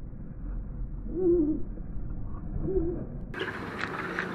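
Two short, low hooting calls with a slight waver in pitch, about a second and a half apart, over a low steady background hum. Just before the end the background switches abruptly to brighter outdoor noise with a few clicks.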